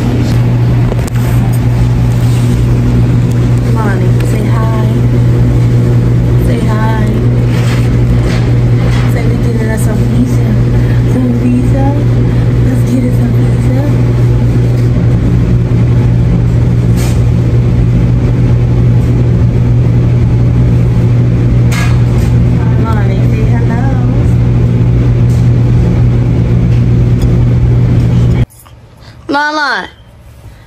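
A loud, steady low mechanical hum with a stack of even overtones, unchanging in pitch throughout.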